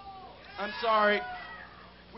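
A man's wordless, drawn-out cry into a microphone, one bending, wavering pitched call of under a second starting about half a second in.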